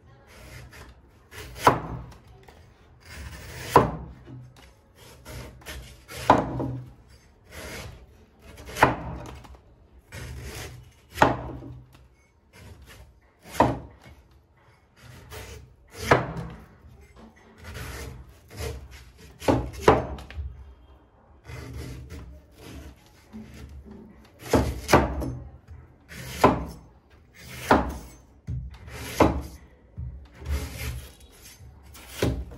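A heavy meat cleaver cutting strips of husk off a green palm fruit against a wooden chopping board. There are about a dozen sharp chopping strokes, one every two seconds or so.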